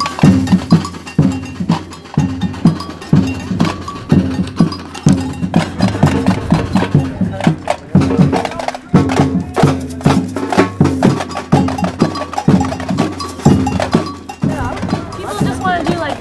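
Samba percussion band playing a steady, driving rhythm of drums with bell and wood-block accents.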